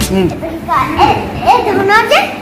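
Young children's voices talking and calling out in short, high-pitched phrases.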